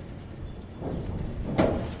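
Road traffic noise, growing louder in the second half as a vehicle passes.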